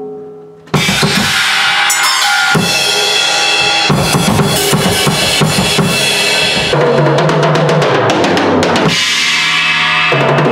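Acoustic drum kit played hard: a brief fading ring at the start, then about a second in the kit comes back in abruptly with rapid bass-drum and snare hits under washing cymbals.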